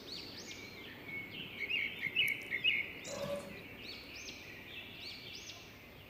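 Small birds chirping in the background: repeated short, high calls over faint room noise.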